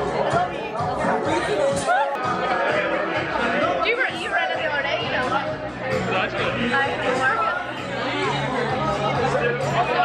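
Many people talking at once in a crowded bar, a steady din of chatter and laughter, with music playing underneath.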